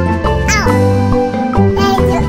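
Light children's background music with a steady bass line and held notes. About half a second in, a short cartoon-style cry slides up and back down over the music.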